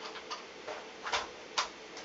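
Short plastic clicks and taps from the mainly plastic body parts of an S&T G36C airsoft rifle being fitted back together by hand. There are about five separate clicks, the sharpest just past a second in and about a second and a half in.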